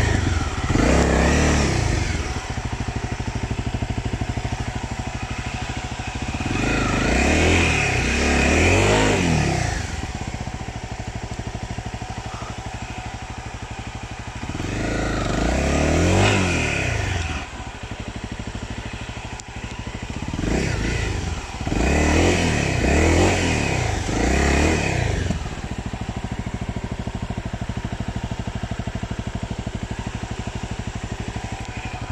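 Dirt bike engine idling and being revved in about five bursts of a few seconds each, each rev rising and falling back to idle, then idling steadily for the last few seconds.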